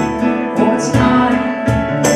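Roland V-Piano digital stage piano played live, chords struck in a steady rhythm about three times a second with sustained notes ringing between them.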